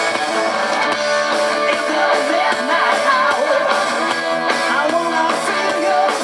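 Live rock band playing an instrumental passage: electric guitar lead with bending, wavering notes over bass and drums.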